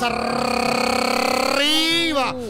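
A man's voice holding one long drawn-out vowel "aaa…" at a steady pitch for about a second and a half, then rising in pitch near the end: a football commentator stretching out his call as the ball is crossed into the area.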